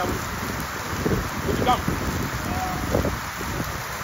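Steady rain falling, a constant hiss, with a few brief indistinct voices in it.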